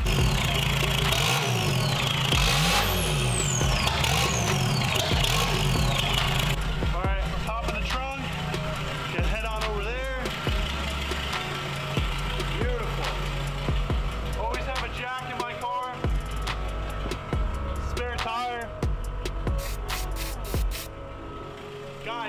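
A turbocharged TDI diesel engine being revved for the first six or so seconds, its noise cutting off abruptly, over music with a heavy bass line that steps from note to note and runs throughout.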